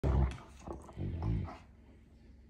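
Dogs vocalising as they play-fight, a black terrier and a Scottish terrier: two short, low dog sounds, one at the start and another about a second in.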